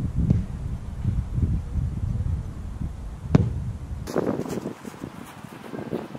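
Wind buffeting an outdoor camera microphone as a low rumble, with one sharp knock a little past three seconds in; the rumble cuts off suddenly about four seconds in, leaving faint open-air ambience.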